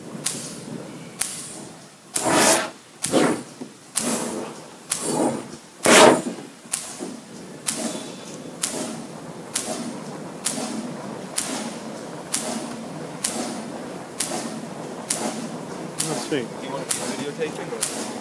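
Pulsair wand pulsing compressed air into fermenting grape must: a regular train of short sharp air pulses, about one and a half a second. Between about two and six seconds in come five louder, longer bursts as big bubbles of air break up through the grape cap.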